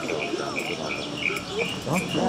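An insect chirping in short, evenly spaced high pulses, about three a second, with faint voices behind.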